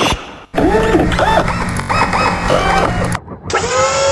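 Synthesized electronic sound effects: short warbling blips that rise and fall in pitch, repeating over a steady low hum. The sound cuts out briefly just after the start and again about three seconds in.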